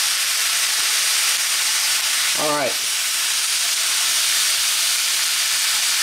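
Sliced steak and pepper and onion strips sizzling steadily in oil in a hot cast-iron skillet.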